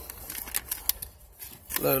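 Chip bag crinkling and crackling as a hand rummages inside it: a run of short, sharp crackles over the first second, quieter after that.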